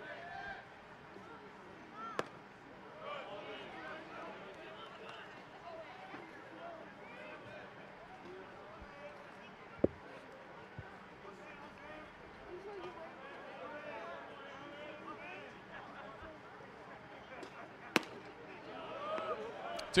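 Low ballpark crowd ambience with scattered spectator chatter and a few isolated sharp knocks. Near the end a pitch pops into the catcher's mitt.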